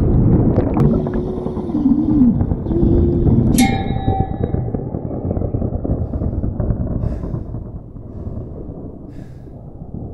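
Film sound design of a stormy sea: a heavy low rush of waves, with low moaning tones gliding up and down in the first few seconds and a brief high tone near four seconds. The rush fades away over the last few seconds.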